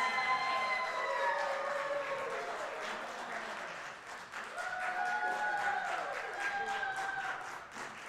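Audience applauding, with long drawn-out whooping cheers: one right at the start and another around the middle.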